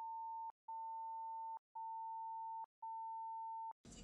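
Censor bleep: a steady, pure, high beep sounded four times in a row, each a little under a second long with short breaks, with all other sound muted.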